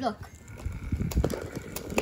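Small electric motor of a fan-propelled toy car kit whirring steadily as it spins its propeller, starting about half a second in. Light knocks and rattles of the plastic car being handled on the floor.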